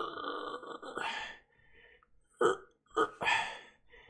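A man's non-word throaty vocal sound, drawn out for about a second and a half, then two short vocal bursts near the end.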